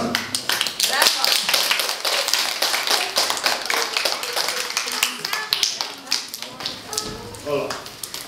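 Applause from a small group of children and adults: quick, uneven hand claps that thin out after about five seconds.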